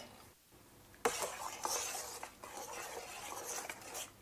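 A spoon stirring a thick mixture of melted grated soap, herbal infusion and powders in a pot, scraping against the sides. The stirring starts with a click about a second in and goes on steadily.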